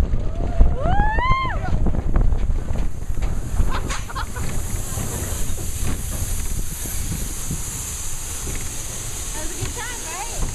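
Big Thunder Mountain Railroad mine-train coaster running on its track: a steady low rumble with wind buffeting the microphone, and a few sharp clacks about four seconds in. A rider's whoop rises and falls about a second in.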